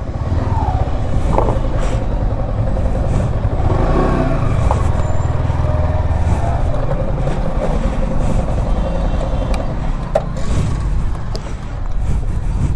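Yamaha R15 V4's 155 cc single-cylinder engine idling steadily as the bike is eased out of a parking spot, a low, even running sound with a few small clicks.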